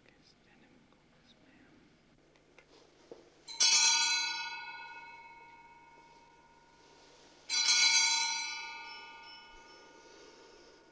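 A bell rung twice, about four seconds apart, each clear ring dying away slowly over a couple of seconds. A few faint clicks come just before the first ring.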